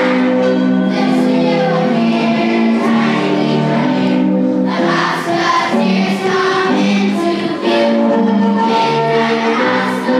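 Music with a choir singing long held notes that shift every second or so.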